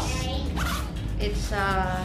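A leather handbag being handled and opened, with a short zip-like rustle near the start, over background music with a singing voice.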